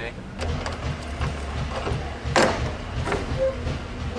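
Metal door latch on an enclosed cargo trailer being worked open, small clicks and then a sharp clank about halfway through as the latch lets go, over a low steady rumble.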